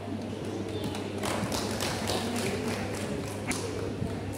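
Scattered hand clapping from a small group, irregular and thickening about a second in, over a steady low hum.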